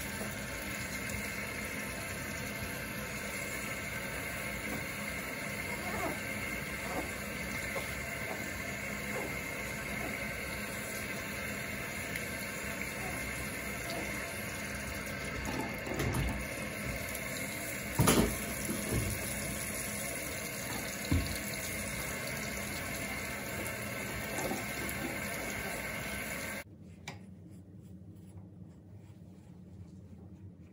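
Bathroom sink faucet running steadily into the basin, then shut off abruptly near the end. A few short knocks come through the running water, the loudest about two-thirds of the way through.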